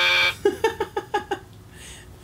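A game-show wrong-answer buzzer held on one steady tone cuts off just after the start, marking a wrong guess. About a second of quick, short bursts of a man's laughter follows.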